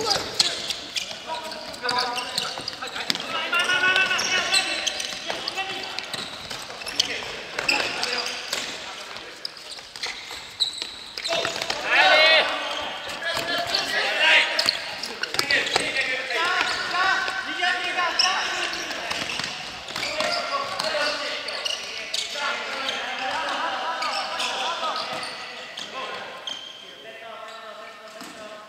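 Futsal being played on a wooden sports-hall court: the ball thumps off players' feet and bounces on the floor again and again, while players shout and call to each other, echoing in the hall.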